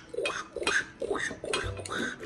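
Small plastic toy pieces handled and fitted together, giving a few light clicks and knocks about every half second.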